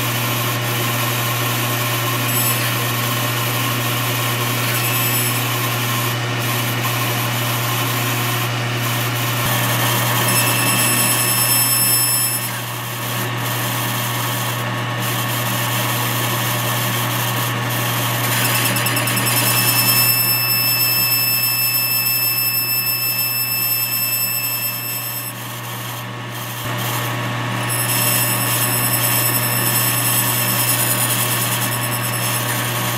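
Metal lathe running, its tool cutting a back cut (a 30-degree chamfer) on the back of a VW intake valve head spun in a collet chuck. A steady motor hum underlies it, and a thin high-pitched ringing comes and goes several times, with two brief drops in loudness.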